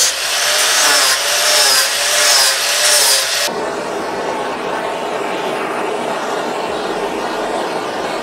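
A DeWalt angle grinder cutting feather veins into cedar, its whine dipping and rising as the disc bites the wood. About three and a half seconds in it gives way to the steady hiss of a handheld torch scorching the carved feathers.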